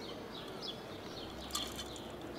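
Background birds chirping: short, falling chirps a few times a second over a faint low hum, with a brief click about one and a half seconds in.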